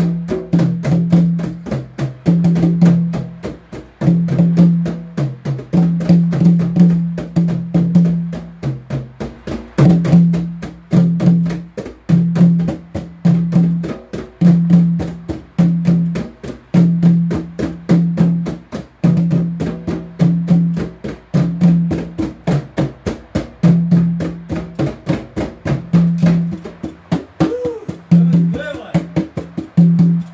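Hand drums played with bare hands in a fast, steady rhythm of many strikes a second, over a repeating low held note.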